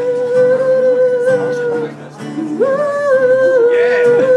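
Live acoustic cover: a voice holds a long sung note over strummed acoustic guitar. The note breaks off about two seconds in, and a second note slides up and is held.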